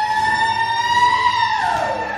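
One long, high-pitched celebratory hoot from the audience for a graduate crossing the stage. It holds nearly level with a slight rise in pitch, then slides down and fades near the end.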